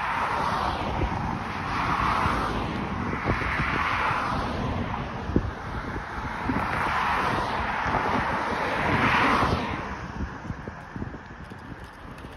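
Cars passing one after another on a multi-lane road, each a swell of tyre and engine noise that rises and fades, about five in all, with wind rumbling on the microphone. The traffic noise dies down about ten seconds in.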